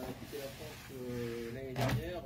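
A man's faint voice: a short sound, then a drawn-out, level hesitation sound about a second in, and a breath near the end.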